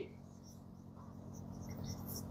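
Faint squeaks and scratches of a marker pen writing on a whiteboard, over a steady low room hum.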